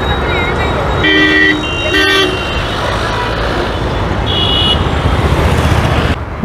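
Busy intersection traffic with motorcycles, scooters and auto-rickshaws running past and a steady engine rumble. Vehicle horns honk twice, about one and two seconds in, and a higher-pitched horn beeps briefly later on.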